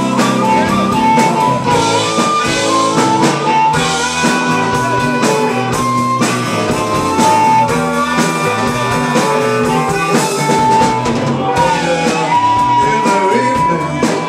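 Blues band playing an instrumental break, led by an amplified blues harmonica holding long, bending notes over electric guitar and a drum kit.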